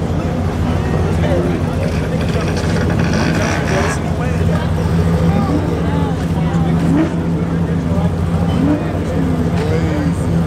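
A Humvee's diesel engine running with a steady low drone, with onlookers' voices calling out over it.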